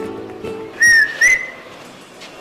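A man whistling through his fingers to catch a passing woman's attention: two loud, sharp whistles about a second in, the first falling slightly, the second rising and then held briefly.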